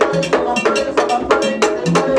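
Vodou ceremony drumming: a struck metal bell and drums play a fast, steady rhythm of about six strikes a second, each strike ringing briefly.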